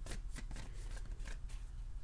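A deck of tarot cards being shuffled by hand: a run of quick, irregular card snaps over a steady low hum.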